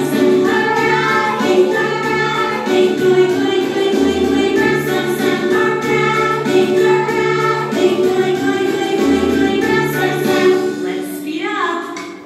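A group of young children singing along to a recorded children's song with a repeating bass line. The music dips in loudness near the end.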